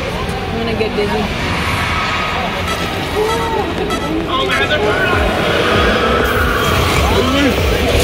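Indistinct chatter of several voices over a steady low rumble of a moving vehicle, the rumble growing louder in the second half.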